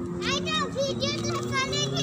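A young child's high-pitched voice in short, quick calls and chatter while playing.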